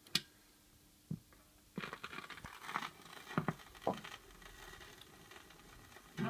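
Handling clicks from a record player's tonearm, then a stylus running in the lead-in groove of a vinyl 7-inch single: crackle and pops for a couple of seconds, settling into faint steady surface noise just before the music starts.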